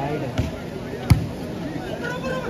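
Thumps of a volleyball in play: a light one just under half a second in and a loud, sharp one about a second in.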